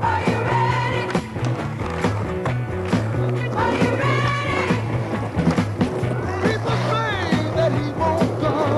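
Soundtrack music with a repeating bass line and a voice singing over it.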